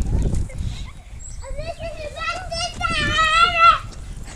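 A child's long, high-pitched squeal, wavering slightly in pitch, starting about a second and a half in and lasting a little over two seconds, over a low rumble.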